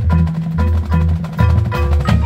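High school marching band playing its field show: sharp percussion strikes and pitched mallet notes over sustained low bass notes.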